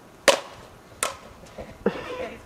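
Bat hitting a hollow plastic Blitzball with a sharp crack, followed about three-quarters of a second later by a second, quieter knock.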